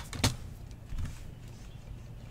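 A computer keyboard being moved into place on a desk mat: a sharp click at the start, a loud knock about a quarter second in, then a softer knock about a second in, over a low steady hum.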